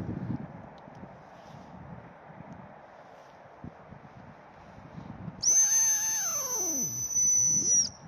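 A gundog hunting whistle blown in one long, high, steady blast, starting a little past halfway and cutting off sharply just before the end. It is the stop whistle, the signal for the retriever to stop and sit at a distance.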